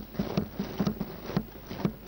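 Assembly members thumping their desks in approval: a run of irregular, hollow knocks at about five a second, the usual applause in the Tanzanian parliament.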